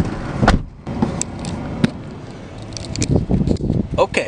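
Knocks and clicks of someone moving about inside a vehicle's cab, with a sharp knock about half a second in and a run of lighter clicks near the end, over a low rumble.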